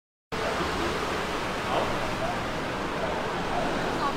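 Steady outdoor street background noise, an even hiss with faint, indistinct voices in it, starting abruptly a moment in.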